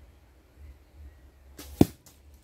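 An arrow shot from a traditional bow flies in with a brief whoosh and strikes with one sharp thud near the end.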